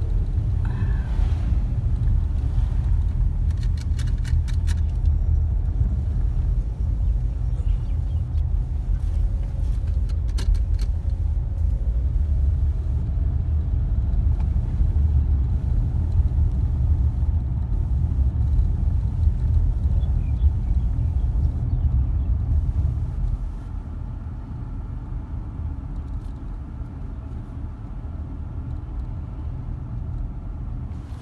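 Steady deep road and engine rumble heard inside a moving car's cabin. It drops noticeably in level about two-thirds of the way through.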